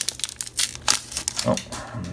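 Foil wrapper of a Pokémon booster pack crinkling and tearing as it is ripped open by hand: a quick, dense run of crackles that thins out about a second and a half in.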